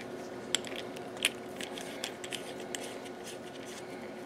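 Light metallic clicks and scrapes as a power meter's multi-pin sensor cable connector is handled and fitted onto an E4412A RF power sensor. Two sharper clicks come about half a second and just over a second in, followed by smaller ticks.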